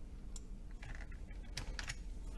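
Computer keyboard keys being pressed: a single click less than half a second in, then a short cluster of keystrokes about a second in and a quicker run of several clicks near the end.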